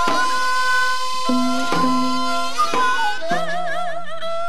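Korean traditional instrumental accompaniment for the seungmu dance: a sustained melodic line that swells into a wide, wavering vibrato near the end, marked by drum strokes about once a second.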